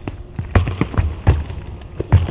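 A handball player's shoes on a hardwood court: running strides and take-off thuds, several heavy thumps about half a second apart with lighter clicks between, in a large empty indoor arena.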